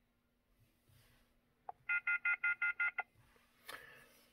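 A rapid run of about eight short electronic beeps lasting about a second, each a chord of steady high tones, with a soft click just before them.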